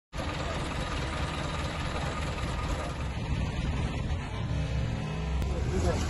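Bus engine running steadily, with voices in the background.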